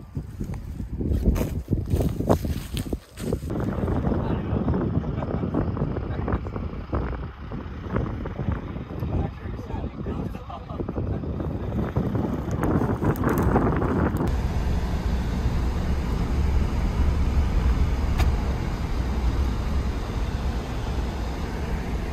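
Wind buffeting the microphone outdoors, with scattered knocks and indistinct voices. About two-thirds of the way through, this cuts to the steady low rumble of a car driving, heard from inside the cab.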